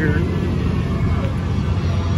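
A steady low rumble fills the background.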